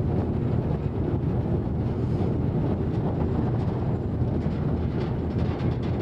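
Steady wind buffeting the microphone over the low, even running of a diesel locomotive crossing a railway bridge, heard from its open outside deck.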